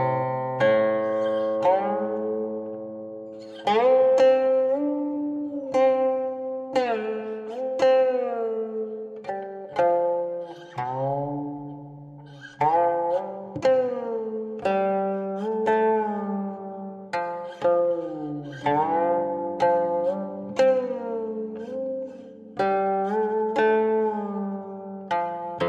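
Background music: a plucked zither playing a slow melody, its notes sliding in pitch just after each pluck.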